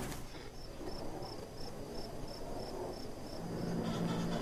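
Crickets chirping in an even rhythm, about three high chirps a second. A low steady hum comes in near the end.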